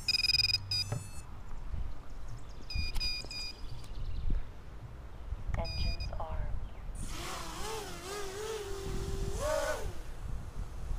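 Small quadcopter's brushless motors (DYS BE1806) on a 3S battery sounding three short sequences of startup beeps. From about seven seconds in they spin up with a wavering whine that climbs sharply near the end.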